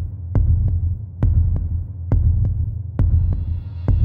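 A low, throbbing heartbeat-like pulse from a film soundtrack: double beats, lub-dub, repeating a little under once a second, over a deep hum.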